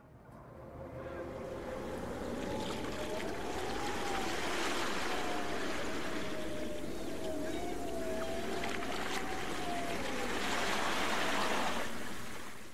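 Sea surf: a steady wash of waves that swells up over the first few seconds and fades away at the end. A thin wavering tone drifts up and down through the middle.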